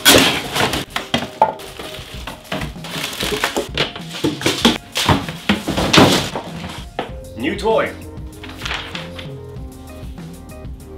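Unpacking a new kitchen appliance: cardboard flaps and packaging rustling, with hard plastic parts knocking and thunking as they are lifted out and set on the counter. Background music with steady tones comes in near the end.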